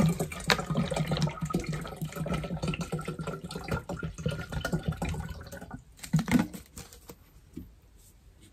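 Water pouring from a small plastic water bottle into a gallon water jug, a steady gurgling stream that stops about six seconds in.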